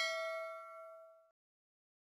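Notification-bell 'ding' sound effect for a subscribe-button animation: one bell tone with a few overtones, ringing out and fading away a little over a second in.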